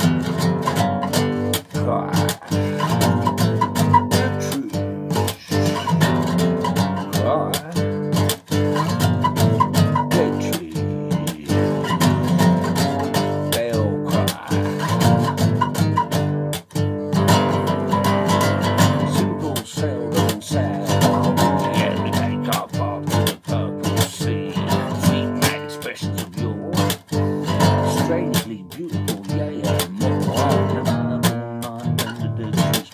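Acoustic bass guitar strummed and plucked by hand, a steady run of strummed chords and picked notes ringing on.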